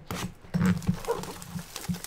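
A cardboard trading-card box being cut open with a blade and handled: irregular scraping, rustling and knocks, loudest about half a second in.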